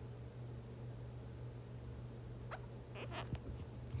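A steady low hum with a few faint light ticks and scratches of a stylus drawing on a tablet's glass screen in the second half.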